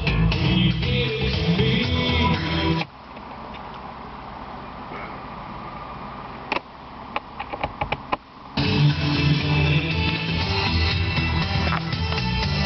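Music with guitar playing through a Toyota 4Runner's factory car stereo from a device on the auxiliary input. About three seconds in the music cuts out, leaving a quieter stretch broken by a quick run of sharp clicks. The music comes back about nine seconds in.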